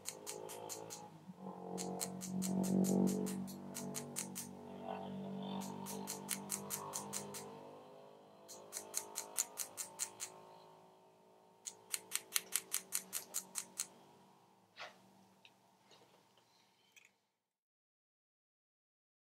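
Light, quick taps on a steel doming punch in runs of about six to ten strikes. Each run rivets the head of a silver wire into a copper plate to form a raised dot inlay. Soft background music with long sustained notes plays underneath and cuts off abruptly near the end.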